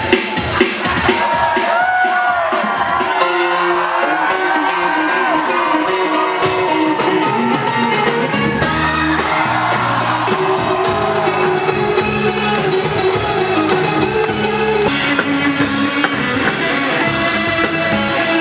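Indie rock music with electric guitar and a voice singing in gliding phrases; a low bass line comes in about six seconds in.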